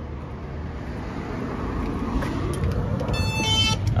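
Road traffic noise, growing slowly louder, then a two-note electronic door chime near the end as the shop door opens.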